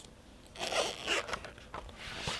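A book page being turned by hand: paper rustling in a few quick bursts, starting about half a second in.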